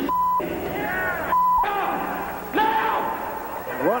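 Two short censor bleeps, each a steady tone of about 1 kHz that blanks out everything else, one at the very start and one about a second and a half in, covering words in a man's shouted speech.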